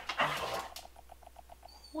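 Dog whining briefly: a short low sound, then a quick pulsing whine of about ten beats a second that fades out.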